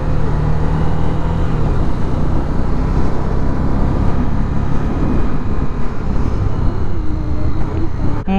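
Honda CB300F's single-cylinder engine running at a steady cruise, its note clearest in the first couple of seconds, under a loud, steady rush of wind and road noise on the camera microphone while riding.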